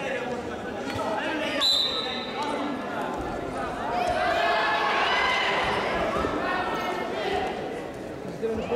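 Referee's whistle, one short high blast about two seconds in, restarting a freestyle wrestling bout, with voices shouting and occasional thuds in a large hall.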